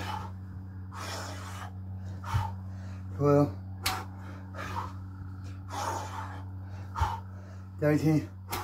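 A man breathing hard and panting between burpee reps, with a short voiced grunt or mumbled count about three seconds in. Soft thumps come about four and a half seconds apart as he drops to the floor, over a steady low hum.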